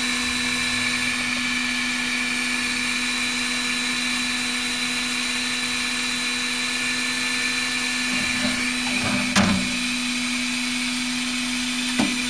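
Dremel Digilab 3D45 3D printer's direct-drive extruder motor feeding filament through the hot nozzle, together with its fans: a steady, even motorised hum with a fixed whine. A short, slightly louder noise comes about nine seconds in.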